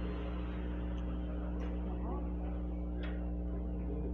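A steady low electrical hum in the audio feed, with faint background voices and two faint clicks, about a second and a half and three seconds in.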